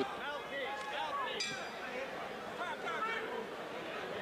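Boxing crowd chattering, many overlapping voices and calls with no single voice in front.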